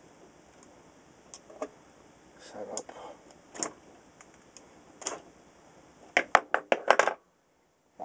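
Hands and a small metal tool working the wiring of an old radio chassis: scattered light clicks and rustles, then a quick run of about eight sharp clicks near the end, after which the sound drops out completely.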